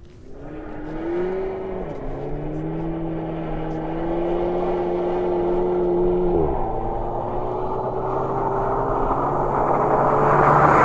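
2014 Audi S3 Cabriolet's turbocharged 2.0-litre four-cylinder accelerating hard, its pitch climbing and then dropping sharply at two upshifts, about two seconds in and again about six and a half seconds in. It grows steadily louder as the car approaches, over a hiss of tyres throwing up snow.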